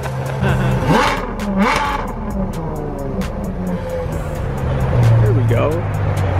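Ferrari engine idling as the car creeps forward at low speed, its low note shifting in steps with light throttle and swelling briefly about five seconds in.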